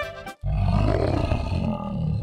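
A dinosaur roar sound effect: one long, deep growling roar that starts suddenly about half a second in, right after the music cuts off.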